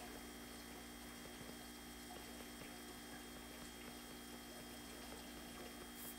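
Faint steady electrical mains hum with a thin high whine over quiet room tone, with a few faint light ticks from a stylus writing on a tablet screen.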